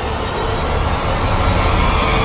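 Cinematic logo-reveal sound effect: a loud, dense rushing whoosh that swells steadily louder, with faint steady tones under the noise.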